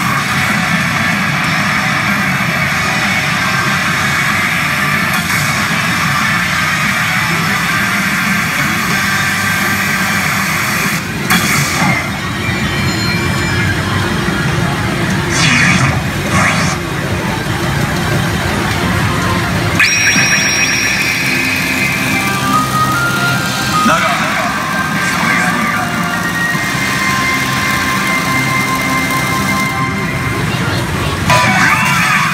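Pachinko machine (PA Hana no Keiji Ren) playing loud continuous music and electronic effect sounds. A held high electronic tone comes in about two-thirds of the way through, with more chimes after it.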